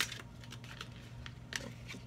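Tarot cards being handled and laid down on a table: a sharp click at the start, then a few faint clicks and slides.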